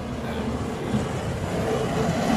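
Hi-rail pickup truck rolling along the rails toward the listener, its engine and running noise growing steadily louder as it approaches.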